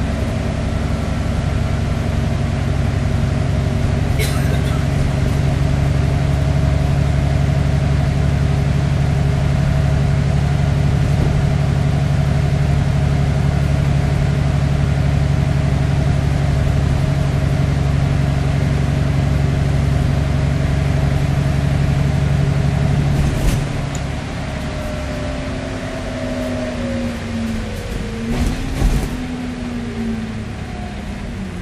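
Cummins diesel engine and Voith driveline of an Alexander Dennis Enviro400MMC double-decker bus, heard inside on the upper deck, running steadily under power. About three-quarters of the way through the drone drops off as the bus comes off the power, and falling whines follow as it slows, with a few knocks and rattles from the body.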